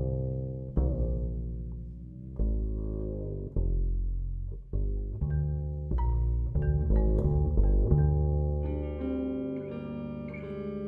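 Live ensemble music led by a double bass played pizzicato: a series of deep plucked notes, each fading after the pluck, with a note bending in pitch near the start. Brighter plucked notes, likely guitar, join near the end.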